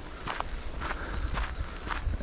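Footsteps of a person walking on a dirt forest track: a series of soft, irregular steps.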